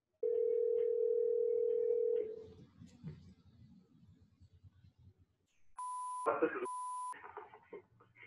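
Telephone ringback tone on a recorded phone call: one steady ring of about two seconds, then faint line noise. Near the end the agent answers, and two short, steady censor bleeps cover the redacted names in the greeting.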